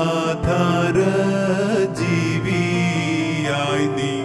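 Malayalam Christian devotional song: keyboard accompaniment under long held, slowly bending sung notes.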